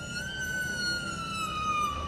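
A single high held tone, rising slightly and then slowly falling in pitch, over a low steady rumble.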